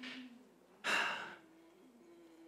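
A man takes one audible breath, about half a second long, near the middle. A faint steady low tone sits underneath afterwards.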